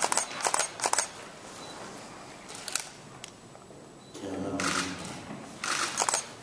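Camera shutters clicking in scattered single clicks and short bursts, with a low voice murmuring briefly past the middle.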